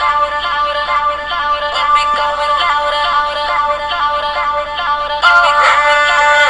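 Multitrack demo song playing back from an online audio editor: electronic backing with synth parts and vocals. It gets fuller and louder about five seconds in as more vocal parts come in.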